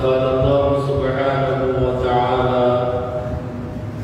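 A man's voice chanting Arabic in one long, drawn-out melodic phrase, holding each note steadily and stepping between pitches. It trails off shortly before the end.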